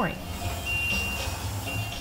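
Pancake batter sizzling on a hot propane flat-top griddle as it is poured, a steady hiss. A thin high tone comes and goes over it.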